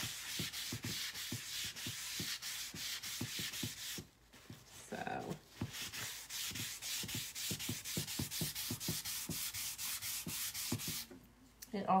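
Paper towel rubbed briskly back and forth over a freshly stained wooden board, about four to five strokes a second, with a short pause about four seconds in and again near the end. It is wiping off the still-wet wood stain so the grain comes through with a worn look.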